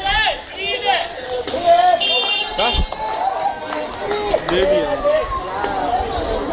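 Several people's voices calling out and talking over one another, with a brief high shrill call about two seconds in.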